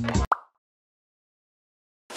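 Background music cuts off abruptly a quarter second in, followed by a short rising pop-like blip, then dead silence.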